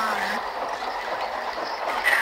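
Steady hiss-like noise, with the last of a spoken word trailing off about half a second in.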